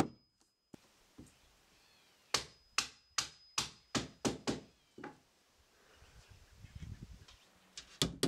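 Steel hammer driving nails: one blow, then after a pause of about two seconds a run of about eight quick strikes, two or three a second, each ringing briefly. A faint low rumbling noise follows near the end.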